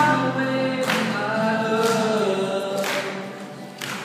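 Male voice singing sustained notes over a steel-string acoustic guitar strummed about once a second, the song growing quieter near the end.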